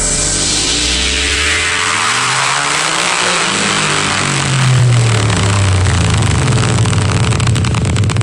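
Electronic dance music build-up in a glitch hop and drum and bass mix. A noise sweep falls in pitch over the first few seconds over a deep bass that slides up and down, and the bass grows heavier about halfway through.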